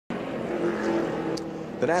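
NASCAR Busch Series stock-car V8 engines running at a steady pitch on track, heard through TV broadcast sound. A commentator's voice comes in near the end.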